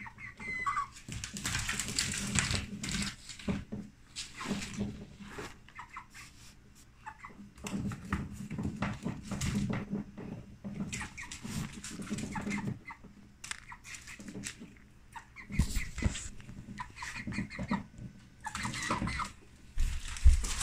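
Scattered taps and scrapes of claws and beaks on a hardwood floor, with a hen's short soft clucks now and then.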